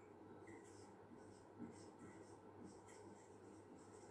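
Faint scratching of a marker pen writing on a whiteboard, a string of short strokes as the letters are drawn.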